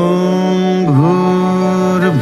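A voice chanting a Hindu devotional song. It holds one long steady note, with a brief dip in pitch about a second in.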